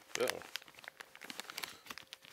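Thin clear plastic bag crinkling in a string of quick, irregular crackles as it is handled and rummaged through.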